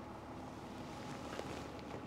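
Quiet room tone: a faint steady hum with a faint click or two, the clearest about one and a half seconds in.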